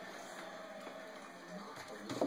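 Music from a television sports broadcast playing in the room, with faint commentary under it.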